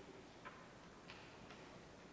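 Near silence: quiet room tone with two faint clicks, about half a second and a second in.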